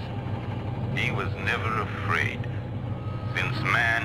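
Sci-fi film sound effects: a steady low electronic hum of the spaceship, with warbling electronic tones gliding up and down above it, busier near the end.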